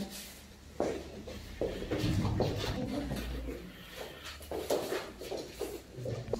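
Room noise with indistinct voices, shuffling movement and a few soft knocks.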